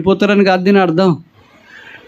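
A man speaking into a microphone for about a second, his voice falling in pitch at the end of the phrase, then a short pause with faint room noise.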